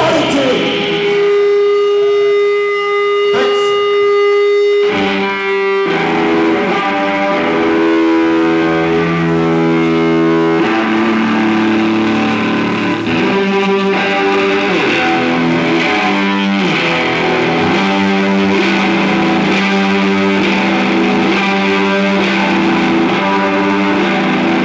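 Live rock band with distorted electric guitars: a single note is held for about five seconds, then the guitars break into a riff of changing notes.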